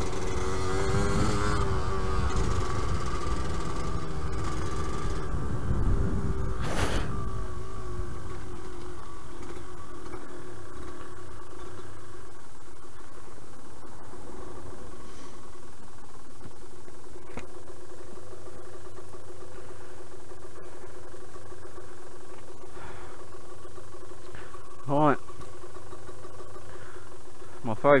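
Yamaha DT125LC's single-cylinder two-stroke engine running at low revs as the bike slows and stops, then idling steadily. A short loud rush about six or seven seconds in.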